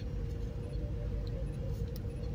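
Steady low background hum with a faint steady tone running through it.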